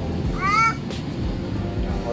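A short, high-pitched squeal about half a second in, rising and then falling in pitch, over steady background music.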